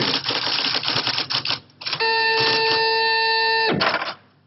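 Rapid typewriter typing, the keys clacking quickly. About two seconds in, a steady buzzing tone sounds for under two seconds over a few more key strikes, then cuts off abruptly.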